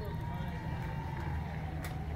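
Steady low outdoor rumble with faint voices in the background, and a single sharp click near the end.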